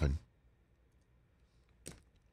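The tail of a man's speech, then a pause of near silence broken by a single short click near the end.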